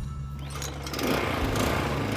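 The Toro TimeMaster's Briggs & Stratton 223cc OHV engine is pull-started with the recoil rope, with no primer or choke. It catches about a second in and then runs steadily.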